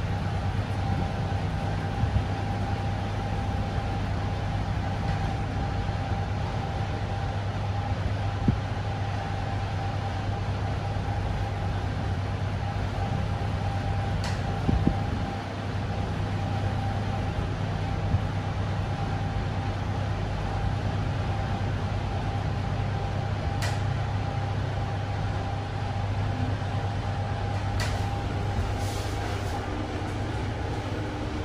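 Inside an IFE Metis-HS high-speed traction lift car travelling up at speed (rated 210 m/min): a steady rushing noise with a constant low hum and a faint steady whine, and a few faint clicks.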